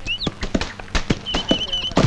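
Irregular knocks of billhooks hacking at tree trunks, several to a second, with small birds chirping, including a quick run of repeated chirps past the middle.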